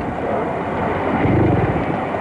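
Mercury outboard motor on a small aluminium boat running with a steady low rumble that swells louder about a second and a half in.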